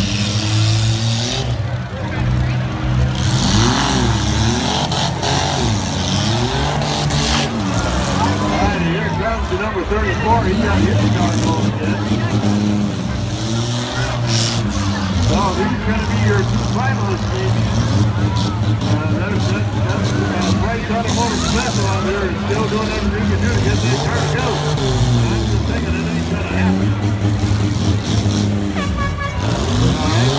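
Engines of small four-cylinder and V6 demolition-derby cars revving and running hard, their pitch rising and falling again and again as the cars drive and ram each other.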